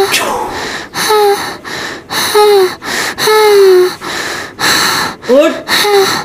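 A woman's voice giving several short, high-pitched cries with falling pitch, with gasping breaths between them; the longest cry comes about three seconds in.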